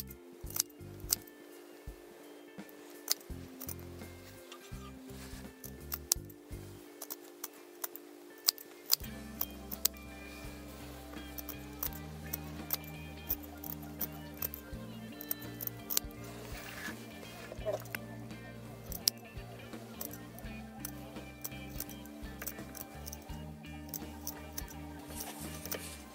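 Repeated short, sharp snips of dressmaking shears cutting through faux fur's backing close to the pile, at irregular intervals. Quiet background music with slow sustained chords runs underneath.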